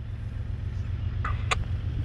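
A steady low rumble fades in, with faint mid-pitched sounds starting about one and a quarter seconds in and a single sharp click about a second and a half in.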